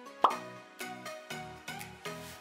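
Logo sting: a sharp pop about a quarter-second in, followed by a short jingle of pitched notes over a bass, roughly two notes a second.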